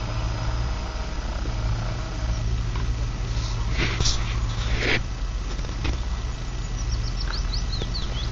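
Outdoor lakeside ambience: a steady low rumble under small birds singing, with a quick run of high falling notes near the end. Two short rustles come about four and five seconds in.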